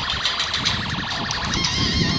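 Wind rushing over the microphone and rattling from a bicycle ridden on an asphalt road.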